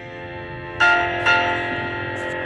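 Two bell-like strikes about half a second apart, a little under a second in, each ringing on with many overtones and slowly fading over a sustained bed of steady tones.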